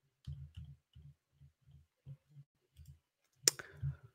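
Faint, irregular light clicks and taps close to the microphone, from hands handling a device at the desk, with one sharper click about three and a half seconds in.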